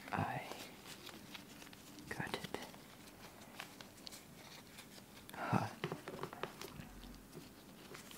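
Wooden snake cube puzzle blocks giving faint clicks and knocks as latex-gloved hands twist and fold them into a cube. Three short, soft vocal sounds, breathy or whispered, stand out: one at the start, one about two seconds in and one about five and a half seconds in.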